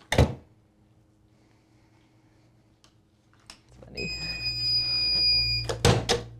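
A tumbler heat press clunks shut, then its timer gives one steady electronic beep about two seconds long over a low hum, signalling that the pressing time is up.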